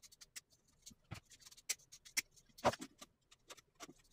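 Faint, scattered clicks and ticks of stiff electrical wires and an old plastic receptacle being handled and separated at a wall box, with a few sharper clicks in the middle.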